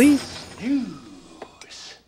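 Speech only: a man's voice trailing off, then a drawn-out whispered "snooze" near the end.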